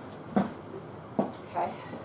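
Short sharp sounds from a person shadowboxing through kickboxing combinations: three quick bursts, the loudest about a third of a second in and two more a little after a second in, in a small room.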